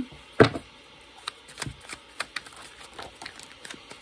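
Tarot deck handled by hand: a thump about half a second in, then a run of small clicks and flicks as cards are shuffled and drawn.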